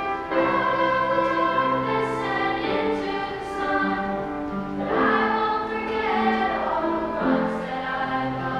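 A small group of young students singing a song together as a choir, holding long notes that change pitch every second or so.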